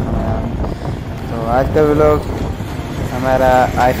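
Steady low rumble of a vehicle driving along a road, with a voice speaking in two short stretches over it.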